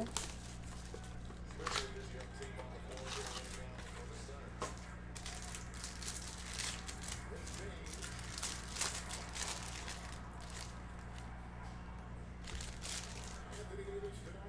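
Clear plastic wrapper on a stack of trading cards crinkling and tearing as it is handled and pulled off by hand, in irregular sharp crackles. A steady low hum runs underneath.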